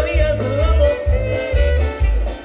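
Live Latin dance band playing loudly through a PA system: a long, wavering held melody note over a heavy bass pulsing about twice a second.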